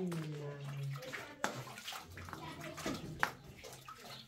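Water splashing, with a voice speaking for about the first second and two sharp knocks later on.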